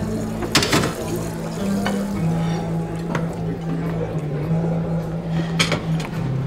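Low held music notes under bar-room clatter: glass bottles clinking, with sharp clinks about half a second in and again near the end.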